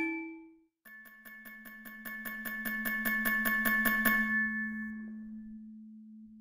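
Music-box music: one tune rings out and stops, then after a short gap a passage of quickly repeated bell-like notes over a held low note swells up and fades away.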